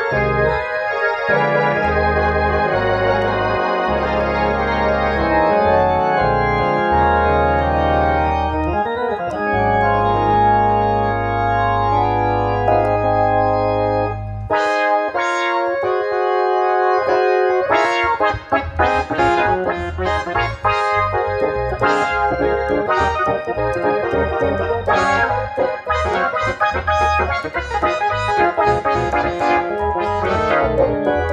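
Hammond Colonnade theatre-style organ being played. For the first half, sustained chords sit over held low pedal-bass notes. About halfway in the bass drops out, and a livelier passage of short, detached chords follows.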